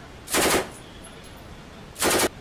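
Two short bursts of automatic rifle fire, each lasting about a third of a second and much louder than the background. One comes a little after the start, the other right at the end.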